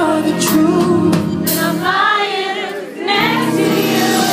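A soul band playing live, with a male singer's voice carried over sustained keyboard and bass chords. About two seconds in, the low accompaniment drops out for roughly a second while the voice holds a wavering run, then the band comes back in.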